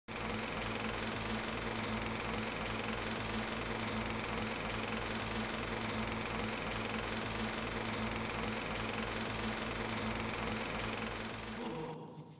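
Tape machine running: a steady mechanical whirring clatter over a low hum, with a fast regular pulse. It fades out shortly before the end.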